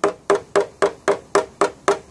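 Hammer tapping a knockdown tapper on a 2014 Subaru XV Crosstrek's rear decklid, about four even taps a second, each with a short ring. The taps still have the funky sound, like the backside of a metal drum, that marks tension left in the metal: the spot is not yet flat.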